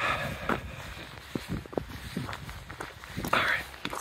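Footsteps of a hiker walking on a trail, irregular soft knocks, with a few spoken words near the start and near the end.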